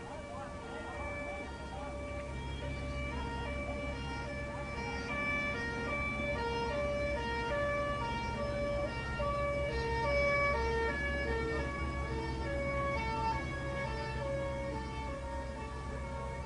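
Two-tone emergency-vehicle siren alternating steadily between a low and a high note, over a steady low rumble.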